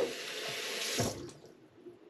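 Bathroom sink tap running water, shut off about a second in.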